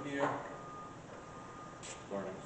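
A person's voice briefly at the start, then low background noise with a thin steady whine in short stretches and a short hiss near the end.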